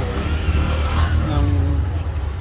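Busy street traffic noise: a steady low rumble of motor vehicles, with one engine's pitch rising and then falling in the first second or so.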